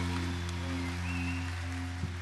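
A live band's final chord held and slowly fading at the end of a song, with a steady low tone under it and a faint hiss of noise.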